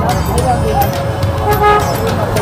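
Street traffic with a vehicle horn: one steady horn note starts about half a second in and is held to the end, over voices and the general din of the crowded road.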